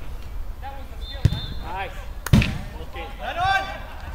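A football being kicked twice, two sharp thuds about a second apart, the second louder, amid players' shouts.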